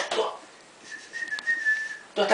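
A person whistling one long, steady high note, starting about a second in, with a faint click partway through; a whistle calling the puppy in to bring the pelt.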